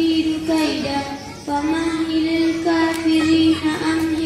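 A young girl chanting Quran recitation into a microphone, melodic and drawn out in long held notes, with a short pause for breath about a second and a half in.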